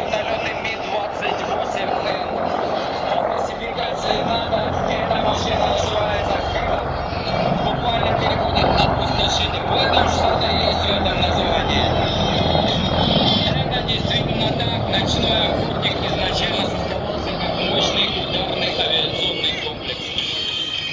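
A formation of four attack helicopters passing overhead, their rotors and engines making a steady noise. It grows louder and deeper toward the middle and eases off near the end. Voices can be heard underneath.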